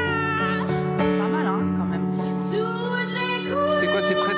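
A young woman singing a slow French ballad with vibrato, accompanying herself on piano with sustained chords.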